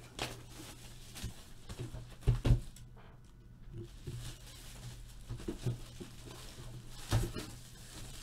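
Handling noises: a few dull knocks and bumps as a Panini Flawless briefcase-style card box is moved about on a table, the loudest a pair of knocks about two and a half seconds in.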